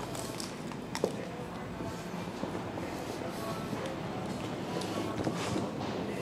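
Steady indoor room noise with faint background music, one short click about a second in, and footsteps as the camera is carried through the showroom.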